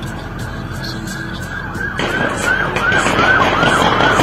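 Emergency-vehicle siren starting suddenly about halfway through in a fast yelp, a rapid rise-and-fall wail about three times a second, getting louder as it approaches, over low road noise.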